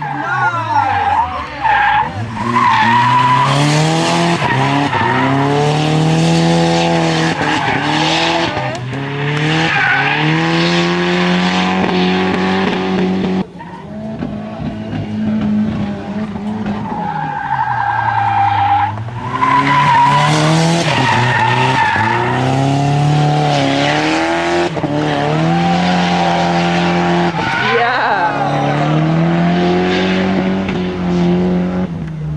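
Nissan 240SX (S13) with a turbocharged KA24E four-cylinder drifting, the engine revving up and falling off again and again over the squeal and hiss of sliding tyres. The sound breaks off sharply about halfway through, then the engine climbs again into another slide.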